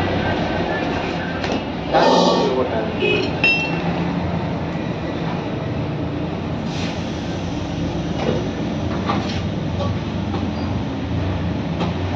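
Steady low rumble in a workshop, with a knock and clatter about two seconds in and a few short metallic clinks soon after, as a small rickshaw tyre and its inner tube are handled and fitted on the floor.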